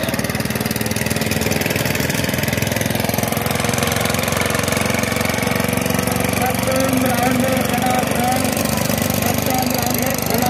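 Diesel engines of two-wheel power tillers running steadily, with a crowd's shouting voices over them.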